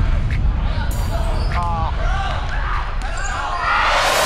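Basketball bouncing on a gym floor during live play, with players' voices and calls in the reverberant gym. A rush of microphone handling noise comes right at the end.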